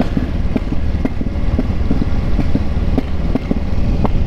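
Motorcycle engine running at low road speed as the bike rides along, a steady low rumble.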